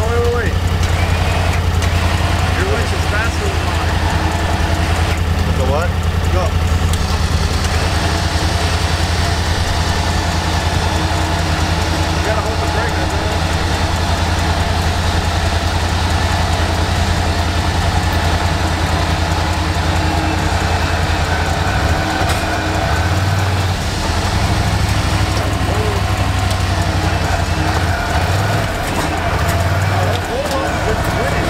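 Off-road vehicle engine idling steadily with a low, even hum while it works a winch; the hum wavers and shifts for a few seconds about two-thirds of the way in.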